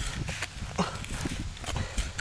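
Hand trowel digging and scraping into loose, stony soil in a few irregular strokes, with soil and small stones crumbling down.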